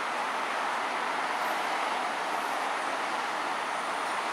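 A steady, unchanging roar of background noise like distant road traffic, with a few very faint high squeaks above it about a second and a half in and again near the end.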